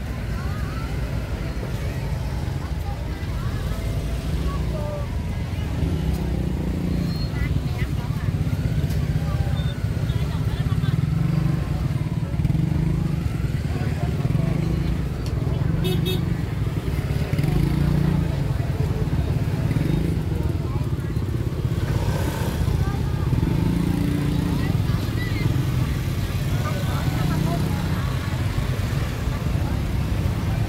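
Busy street-market ambience: a steady low rumble of motorbike traffic with indistinct chatter of people in the background.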